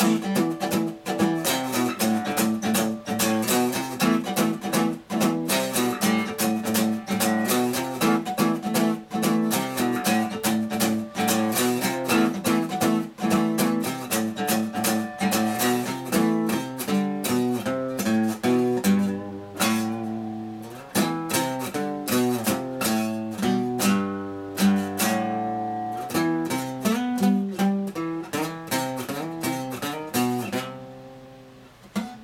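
Acoustic guitar played solo, a steady rhythmic strummed and picked instrumental passage with no singing.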